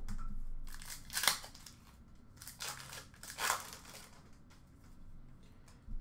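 Trading cards being handled: card stock sliding and rustling against itself, with two brief, louder swishes, about a second in and again past the middle.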